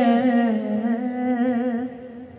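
A man's voice holding one long sung note of a naat, a devotional Urdu chant, with a steady vibrato. The note fades and stops near the end.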